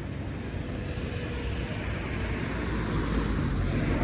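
Road traffic: cars passing on the road alongside, a steady rush of tyre and engine noise that grows a little louder about a second in.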